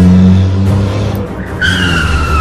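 Car tyres skidding: a high squeal that starts about a second and a half in and falls slowly in pitch, over a low steady drone.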